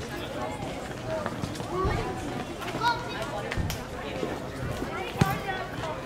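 Voices talking, with a sharp knock about five seconds in.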